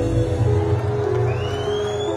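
Live band holding a sustained closing chord on electric guitars, bass and keyboard at the end of a Bangla folk song. About a second and a half in, a thin high whistle rises in pitch over the chord.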